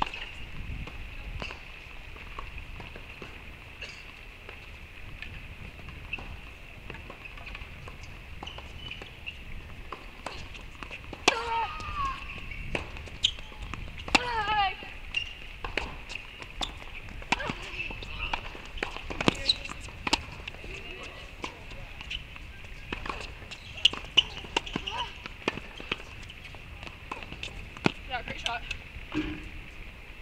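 Tennis balls being struck and bouncing, heard as scattered sharp knocks at uneven intervals, with short bursts of voices around the middle, over a steady high-pitched hum.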